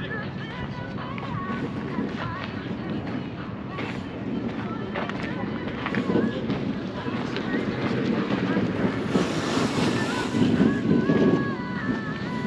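Wind buffeting the microphone, strongest about nine to eleven seconds in, over faint chatter of people standing nearby.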